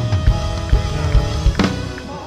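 Live band music led by a drum kit: bass drum hits about twice a second under sustained bass and guitar notes, with one loud hit across the kit near the end.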